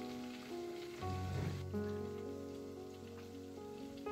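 Pot of groundnut soup simmering, a steady crackle of fine bubbling, with background piano music playing over it.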